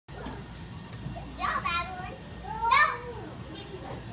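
Young children's voices shouting and squealing, with two loud high-pitched cries about a second and a half in and just before three seconds in, the second the loudest, over a steady low hum.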